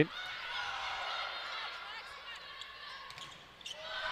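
Volleyball rally in a gymnasium: a moderate crowd noise with many overlapping high squeaks and calls, typical of players' sneakers squeaking on the hardwood court, fading a little near the end.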